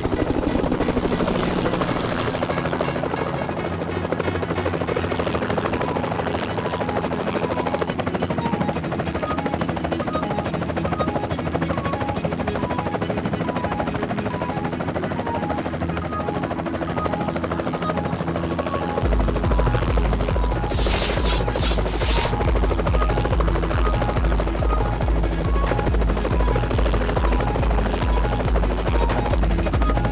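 Helicopter main rotor beating over background music; the low, evenly pulsing rotor chop becomes much louder about two-thirds of the way in. Two brief high hissing bursts come shortly after.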